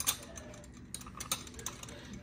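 Small ceramic espresso cups being hung on the hooks of a wire mug-tree stand: a few light, irregular clicks and taps of ceramic on metal.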